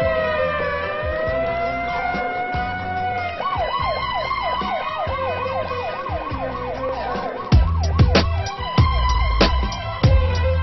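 Police siren sound effect within a hip hop track: a slow wail gliding down and back up, switching a little over three seconds in to a fast yelp of about four sweeps a second. Near the end a heavy drum beat with deep kicks comes in under the siren.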